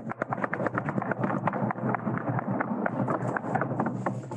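Small audience applauding: a dense, irregular patter of claps with a steady low hum underneath.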